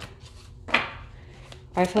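A tarot deck being shuffled by hand: short soft clicks of cards sliding, with one louder rasping sound about three-quarters of a second in.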